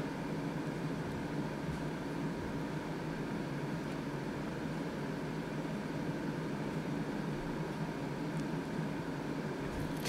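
Steady background hum and hiss, with a faint steady tone running through it and no distinct events.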